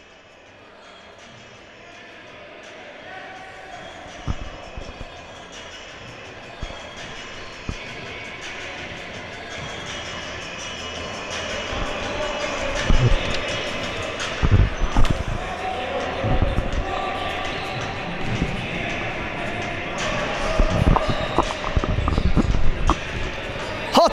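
Basketball dribbled on a wooden gym floor, the low thuds of the ball coming repeatedly in the second half, over the noise of an echoing sports hall. The whole sound grows steadily louder.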